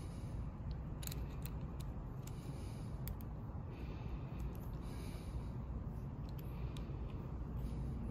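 Faint, irregular clicks and taps of a small Allen key being worked into the screw of a phone-mount bracket, over a steady low hum.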